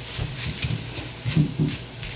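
A metal spoon stirring grated green mango in a metal pot, scraping against the pot in repeated strokes about two to three a second, with two short low sounds about a second and a half in.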